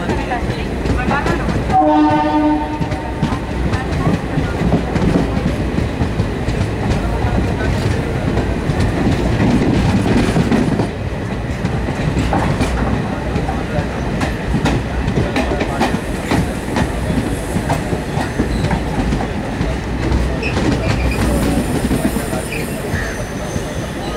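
Passenger coach of a diesel-hauled express running at speed: a steady rumble with the clickety-clack of wheels over rail joints and points. A train horn sounds once, about two seconds in, for about a second.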